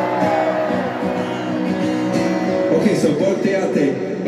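Live music over a stadium sound system: held guitar chords ringing steadily, with voices mixed in.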